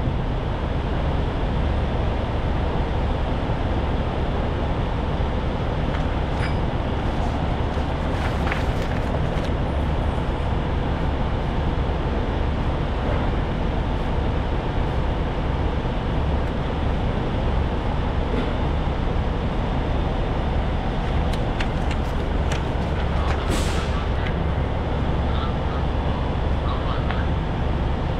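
A large engine running steadily at idle, a deep even rumble, with a few faint clicks and a short hiss near the end.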